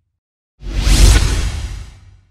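Logo-sting whoosh sound effect: after a short silence it swells up suddenly about half a second in, with a deep low rumble under it, peaks around one second and fades away.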